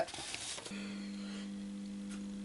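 Steady mains hum from a transformer, starting less than a second in, as the NAD 7030 receiver on the bench is powered up.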